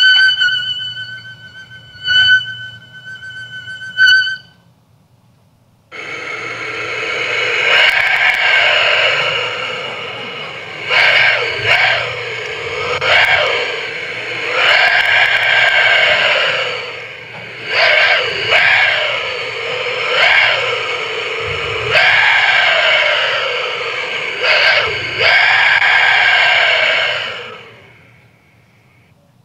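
A musical tone played through a small pillow speaker held in the mouth, the mouth shaping it like a talk box. A steady note with a few sharp clicks breaks off about four seconds in. After a short gap, a continuous buzzy tone returns and sweeps through vowel-like sounds every second or two as the mouth opens and closes, stopping just before the end.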